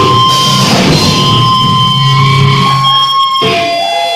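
Live grindcore band playing loud distorted electric guitar, bass and drums, with a steady high ringing tone held over it. About three seconds in the drums and bass stop, leaving only ringing guitar tones with a bending pitch.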